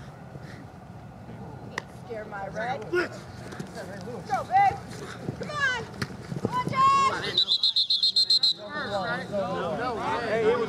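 Men shouting across the field during a flag football play. About seven and a half seconds in comes a rapidly warbling referee's whistle blast of about a second, blowing the play dead.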